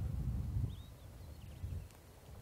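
Outdoor bush ambience: an uneven low rumble of wind on the microphone, with a few faint, high, short bird chirps about a second in.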